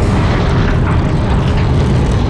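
Loud, continuous deep rumble of a cinematic sound effect, boom-like and heavy in the low end.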